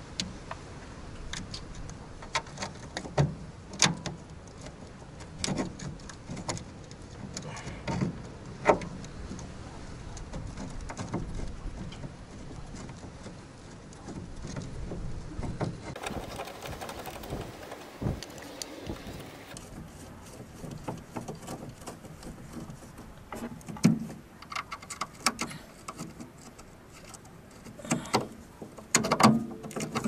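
Irregular metal clinks and knocks of hand work on a VAZ 2106's front suspension as a new ball joint is fitted and bolted in, with a few sharper knocks standing out.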